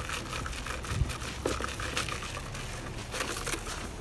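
Footsteps crunching on a leafy dirt trail: irregular crackles and crinkles, with a low thump about a second in.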